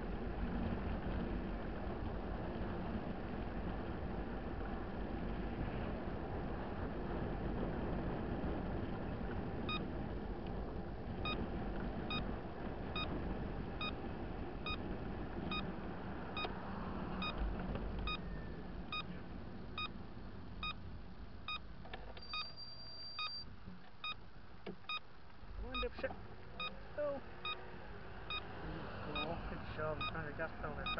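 Motorcycle riding with steady wind and road rumble, which eases off after about 18 seconds as it slows. From about ten seconds in, a turn-signal beeper sounds a short beep a little more than once a second, signalling a turn.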